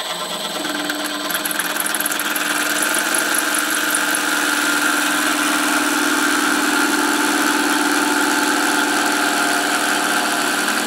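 CNC router spindle running steadily, turning a roll of aluminium foil against a fixed rotary-cutter blade that slits it. A steady motor hum that grows louder over the first few seconds.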